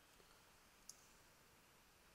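Near silence: room tone with a single faint click about a second in.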